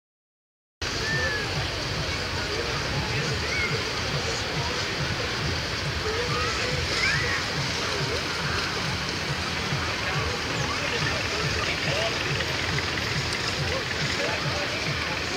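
Riverside ambience of many distant voices of bathers calling and chattering, over steady rushing water and splashing, with wind buffeting the microphone. It starts suddenly under a second in.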